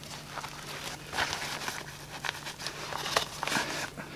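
Hands rummaging in a fabric first-aid pouch: uneven rustling with a few light clicks as a small plastic eye-drop bottle is pulled out.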